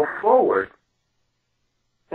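A voice speaking briefly, with a croaky, bending pitch, stopping about three quarters of a second in. Dead silence follows.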